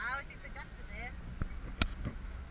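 Steady low rumble of a car driving, heard from inside the cabin, with two sharp clicks about a second and a half in.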